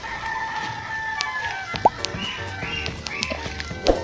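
A rooster crowing once: one long, slightly falling call through the first half, over background music.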